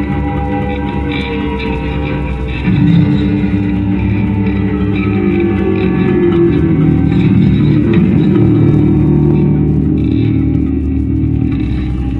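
Two electric guitars playing together through amplifiers: a dense, sustained wall of ringing notes with some pitches sliding, stepping up in loudness about three seconds in.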